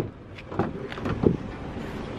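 Kia Sorento rear door being opened by hand: a few light clicks and knocks from the handle and latch over a steady background hiss.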